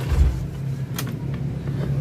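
Isuzu Elf NLR 55 BLX microbus's diesel engine idling steadily, heard from inside the cab, with a deep thump near the start and a sharp click about a second in.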